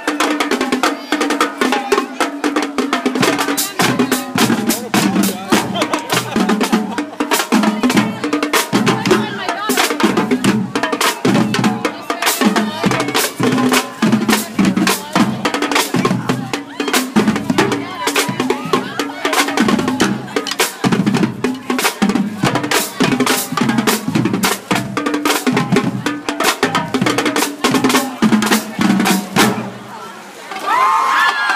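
High school marching drumline playing a fast cadence: snare drums with rimshots and rolls, with the bass drums coming in about three seconds in.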